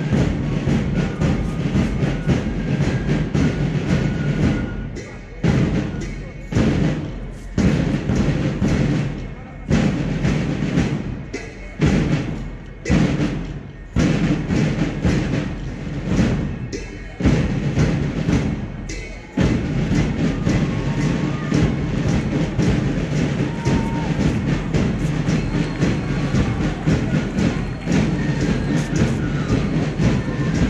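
March music with a heavy drum beat, the strikes loud and low, coming singly with short gaps in the middle stretch.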